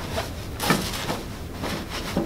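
Rustling and rubbing of a pram bassinet's fabric liner and mattress being laid onto its folded frame and pressed down by hand, with one louder scuff a little under a second in.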